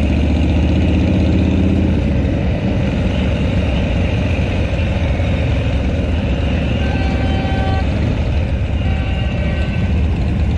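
Motorcycle engines running at low speed in slow street traffic: a deep, steady engine note for about the first two seconds, then a noisier mix of engine sound.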